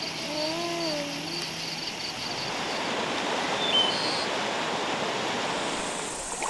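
Meat and onions sizzling in a grill pan over a gas burner: a steady hiss that grows louder after about two seconds. In the first second or two, insects chirp in a quick regular pulse and an animal gives one wavering call about a second long.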